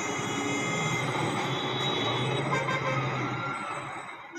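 Town street traffic sound effect, a steady din of vehicles.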